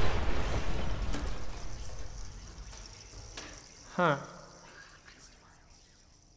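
Rocket launch rumble and hiss dying away over about three seconds, leaving near quiet.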